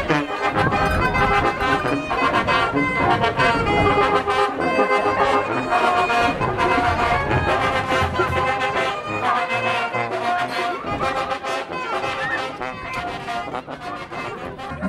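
Mexican brass band music, with trumpets and trombones playing over a steady low beat.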